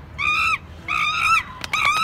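A monkey calling three times in short, clear, high-pitched cries, each under half a second long, with a couple of sharp clicks just before the third cry.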